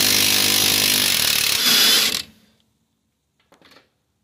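Cordless impact wrench hammering on a 15 mm nut through a long socket extension, a steady buzzing rattle that stops about two seconds in.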